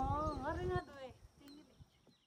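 A voice making a short drawn-out vocal sound with a bending pitch that stops less than a second in, followed by faint low sounds that die away to silence.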